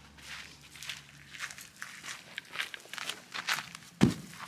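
Footsteps on dirt and rocky ground: a run of light, irregular steps.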